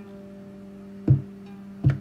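Eurorack modular synthesizer notes driven by a EuroPi coin-toss script in gate mode. A steady low tone is held throughout, and two sharply struck notes sound about a second in and near the end.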